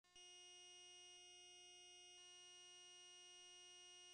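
Near silence: only a faint, steady electronic hum of several pure tones, a noise floor from the tape transfer and not a sound of the shop. The radial arm saw is not heard running.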